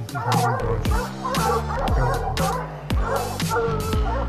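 Electronic music with a bass line and a beat about twice a second, with a pack of hounds barking over it, baying at a leopard they have treed.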